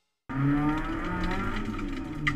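Toyota Starlet's 4E-FE four-cylinder engine running with a steady drone, heard from inside the stripped race car's cabin. It cuts in about a quarter second in, after a moment of silence.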